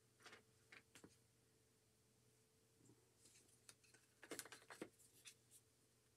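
Faint handling noises: a few soft clicks and rustles, then a busier run of scratchy rustles and clicks in the second half, as fabric is handled and a hot glue gun is picked up.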